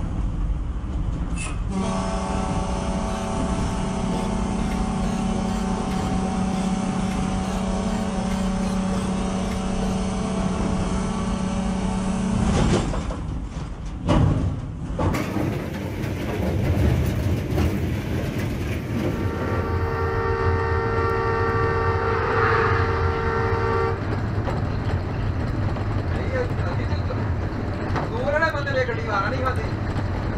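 Locomotive horn blown in one long continuous blast of about eleven seconds, over the rumble of the engine and wheels. After a cut, a second, higher-pitched horn blast lasts about four seconds, and another starts near the end.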